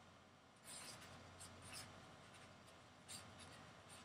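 Faint scratching of a pen writing on a sheet of paper, in a few short strokes over about a second and then again briefly near the end.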